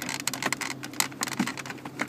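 Quick, irregular small plastic clicks and ticks from a pencil being worked down the slot beside a 2005 Dodge Magnum's automatic shifter, pressing the shift interlock cable aside to free a shifter stuck in park because of a failed interlock part. A steady low hum runs underneath.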